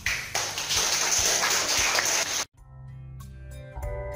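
Brisk rubbing with the hands, a loud, even rustling hiss for about two and a half seconds that cuts off abruptly. Then keyboard music with organ tones begins.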